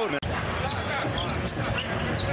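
Basketball bouncing on a hardwood arena court over steady crowd noise. The sound cuts out for an instant just after the start as the footage jumps to another play.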